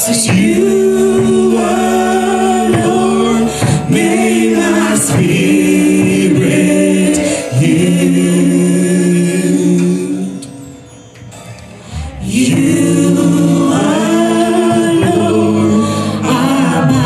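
A man and a woman singing a gospel duet into microphones, holding long notes. The singing drops away briefly a little past the middle, then comes back in.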